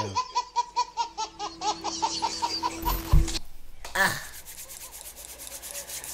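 A baby laughing in quick, even bursts of about five a second, cut off abruptly about three and a half seconds in.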